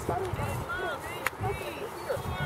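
Several voices calling and shouting at once, overlapping and indistinct, with a single sharp click about a second and a quarter in.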